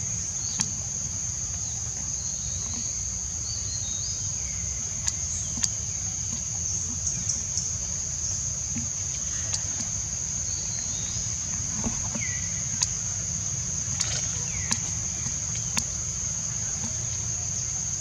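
A steady high-pitched insect drone, with scattered sharp clicks and a few short falling chirps over a low background rumble.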